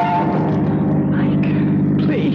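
Car engine running steadily, a radio-drama sound effect, as a music bridge ends just at the start.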